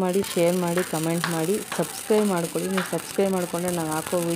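A sparkler candle on a cake fizzing and crackling steadily, with a person's voice over it.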